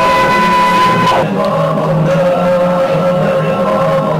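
Loud, long sustained cries from people wailing in held notes: one higher cry breaks off about a second in and a lower one is held through the rest, over further lower voices.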